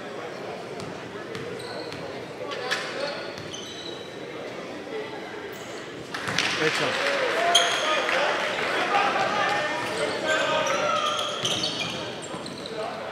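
Game sounds of an indoor basketball game: a basketball bouncing on the hardwood court, sneakers squeaking, and voices from the players and the crowd echoing in the gym. It gets louder about six seconds in as play runs.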